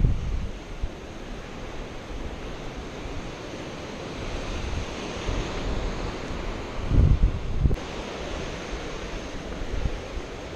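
Sea surf washing over rocks at the foot of the cliff, a steady rushing noise, with wind buffeting the microphone in gusts that are loudest at the start and about seven seconds in. A brief click comes just before eight seconds.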